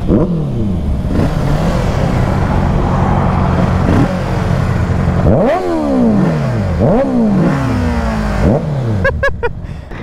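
Sport motorcycle engines. Under way, the pitch drops as the throttle closes, then settles to a steady drone. From about five seconds in come several quick throttle blips, each rising sharply and falling away. The Kawasaki Z650 parallel-twin's note is drowned out by the Honda CBR650R's inline-four.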